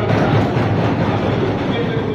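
Applause from a roomful of people: a dense, even patter of many hands that breaks into the speech and holds at full strength.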